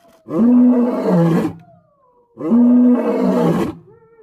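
White lion roaring in a bout of repeated calls: two deep, drawn-out roars, each about a second and a half long, sounding about two seconds apart, with each one dropping in pitch at its end.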